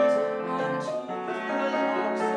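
Tenor voice singing an English art song with piano accompaniment. A held sung note breaks off just after the start, and the piano carries on under the voice, with a short dip in loudness about a second in.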